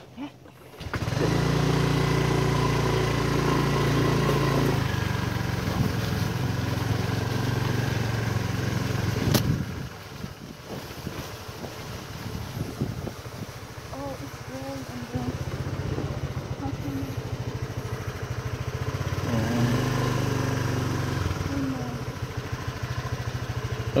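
Motorbike engine running as it carries two riders along a rough dirt track, starting up about a second in. Its note drops back about ten seconds in and picks up again a few seconds later.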